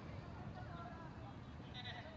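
Faint, unclear voices of onlookers over a low, steady rumble from a distant MV-22 Osprey's proprotors, with a brief high-pitched call near the end.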